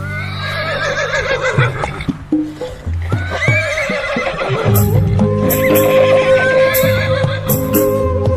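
A horse whinnying twice in wavering calls, in the first half, over music with steady bass notes. A run of sharp clicks follows in the second half.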